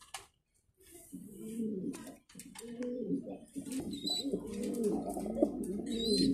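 Domestic pigeons cooing: after a brief hush, several low, overlapping coos rolling up and down in pitch, starting about a second in and continuing.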